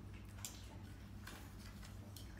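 A few faint clicks and ticks of a glass jar full of rolled paper notes being handled, over a low steady hum.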